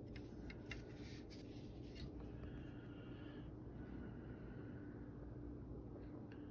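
Quiet room with a low steady hum and a few faint soft clicks and rustles of handling in the first couple of seconds.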